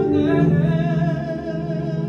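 Live worship song: a man singing into a microphone, holding a long wavering note over sustained band accompaniment.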